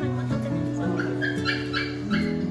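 Pomeranian puppy giving a quick run of about four short, high-pitched yips, starting about halfway through, over background music.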